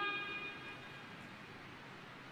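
The last sung phrase of a muezzin's call to prayer dying away in the mosque's reverberation over the first half second. It gives way to a faint, steady hall hush.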